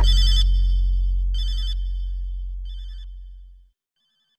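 The end of a slowed-down hip-hop track: the beat stops and a long deep 808 bass note fades out over about three and a half seconds. Three short bursts of a high warbling tone come over it, each fainter than the last, and both die away shortly before the end.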